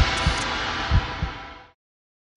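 Title-sequence music: a swelling whoosh with a few deep bass thumps, fading away to silence near the end.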